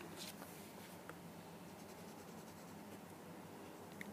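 Faint scratching of a felt-tip marker coloring a toothpick held over paper, with a couple of light taps.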